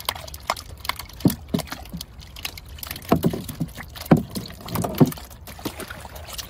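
Catch being tipped out of a trap net into a boat: wet slaps and knocks of fish and water landing on the hull, a few heavier thumps among a scatter of small clicks.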